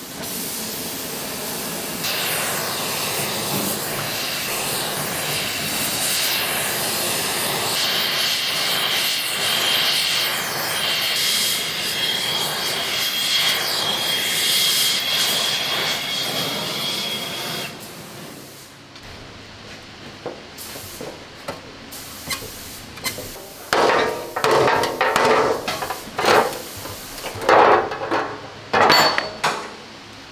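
Gas heating torch burning with a steady hiss, a faint whistle riding on it partway through, as it heats a tight bend in a rusty steel mudguard to relieve the stress in the metal. The torch cuts off a little past halfway, and after a pause comes a series of hammer knocks on the sheet steel.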